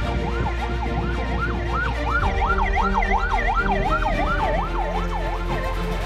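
A vehicle siren in fast yelp mode, its pitch sweeping up and down about three times a second, growing louder through the middle and fading away near the end.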